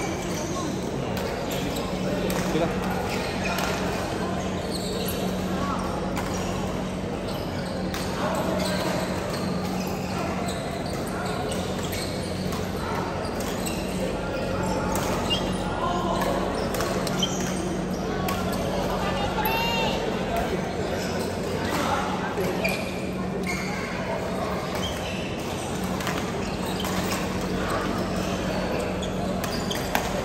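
Badminton play echoing in a large indoor hall: scattered sharp racket strikes on shuttlecocks, mixed with players' voices and a steady low hum.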